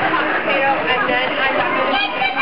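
Overlapping chatter of many children and adults talking and calling out at once.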